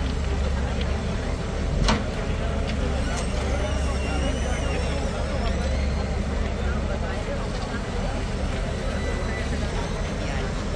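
Diesel engines of heavy earth-moving machines running steadily with a deep rumble, under the indistinct chatter of a crowd of people; a sharp knock about two seconds in.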